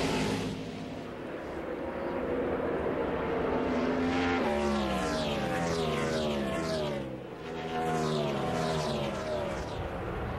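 NASCAR Cup stock cars' V8 engines running through the road course, heard over the TV broadcast. From about halfway through, the engine notes fall in pitch several times in a row.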